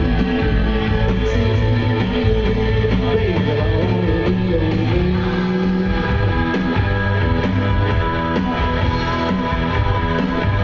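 Loud rock music with electric guitar, playing steadily.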